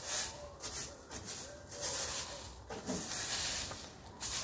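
Leaves and grit being swept across paving with a long-handled yard tool: a run of about five scraping, hissing strokes, roughly one a second.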